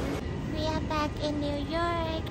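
A woman's voice speaking excitedly in a high, sing-song pitch, saying "we are back in New York", over faint background hum.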